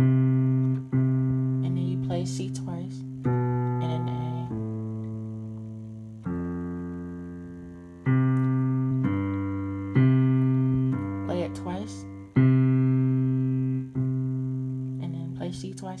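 Yamaha digital piano playing a slow series of chords in the lower register. A new chord is struck every second or two and left to ring and fade before the next.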